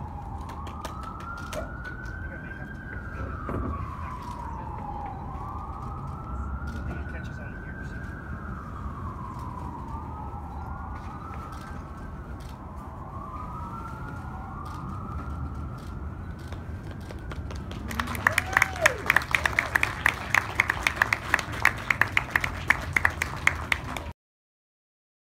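An emergency vehicle siren wailing, its pitch sweeping slowly up and down about every three to four seconds. About eighteen seconds in, a small group starts clapping.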